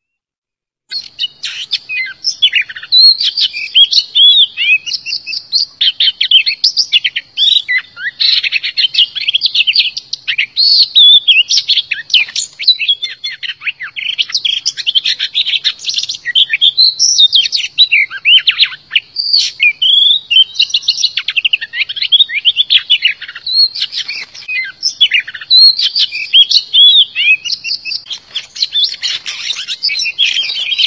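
Oriental magpie-robin singing a long, varied, unbroken run of quick whistled phrases, starting about a second in.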